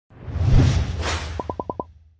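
Logo-reveal sound effect: a whoosh over a deep rumble, then five quick ticks in a row about a second and a half in.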